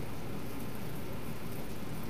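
Steady background hiss, even and unchanging, with no distinct events.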